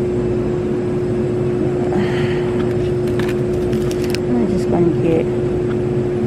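Store background: a steady hum with a low rumble, faint voices, and a few light clicks and plastic rustles as packs of chicken are handled.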